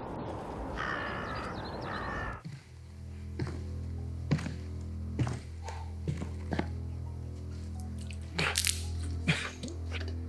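Crows cawing a few times over a rushing noise. About two and a half seconds in, this gives way to a low, steady droning music bed with sharp knocks about once a second, like boot footsteps on a concrete floor.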